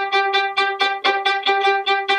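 Violin played spiccato: short, evenly spaced bow strokes on one repeated note, about six or seven a second. This is controlled spiccato led from the fingertips, each note more like a short bow stroke than an uncontrolled bounce.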